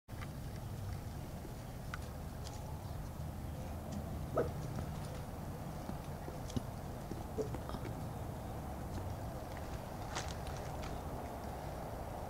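Faint outdoor background: a steady low rumble with a few scattered faint ticks and a short faint call about four and a half seconds in.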